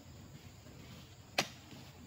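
A single sharp knock about one and a half seconds in, as oil palm fruit bunches are handled for loading onto a lorry, over a faint outdoor background.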